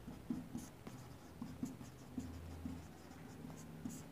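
A marker pen writing on a whiteboard: a run of faint, short strokes and taps as words are written out.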